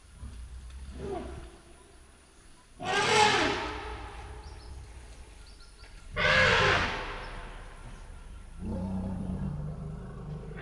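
Elephant calls: two loud trumpeting roars about three and a half seconds apart, each fading over a second or two, then a lower, longer call near the end.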